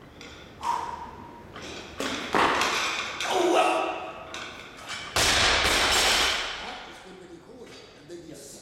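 A barbell loaded with bumper plates being lifted and dropped. The lifter yells and grunts through the pull and the catch, with knocks and clanks of the bar in the middle. About five seconds in the bar is dropped to the floor with a loud crash and clatter that rings on for about a second.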